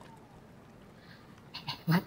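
Quiet room tone, then near the end two short vocal sounds from a person: a brief utterance of one or two syllables.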